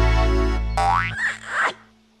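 The song's last held chord dies away in the first second, overlapped by a cartoon 'boing' spring sound effect, several quick rising pitch glides, that ends just before the close.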